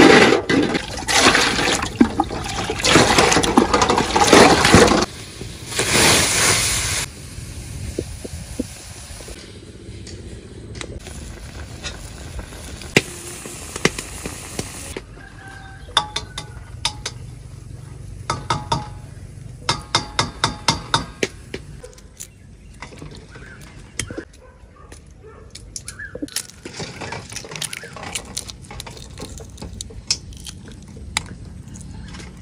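Water pours and splashes over boiled eggs in a steel bowl for the first several seconds. Then eggshells are tapped and cracked against the steel bowl in quick runs of sharp clicks, with the crackle of shell being peeled.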